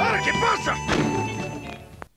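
TV commercial soundtrack played off a VHS tape: music under a voice-over, with a thud about a second in, fading away near the end.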